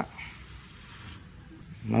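Hand pump-pressure sprayer hissing steadily as it blasts a pressurised jet at a beetle to blow mites off it; the hiss cuts off a little past a second in.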